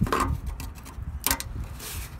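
A corrugated VW Beetle heater hose being worked by hand onto its tube: rubbing and scraping of the ribbed hose, with a few short crinkling strokes near the start, about halfway and near the end.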